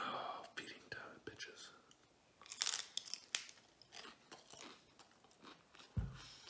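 A bite into a crisp fried taco shell with a loud crunch about two and a half seconds in, followed by chewing with smaller crunches.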